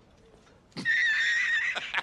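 A high, wavering animal call about a second long, starting about halfway in and breaking into a run of short pulses at the end.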